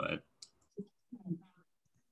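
Brief speech: a spoken "bye", a single sharp click about half a second in, then two short voice fragments, with no background noise between them.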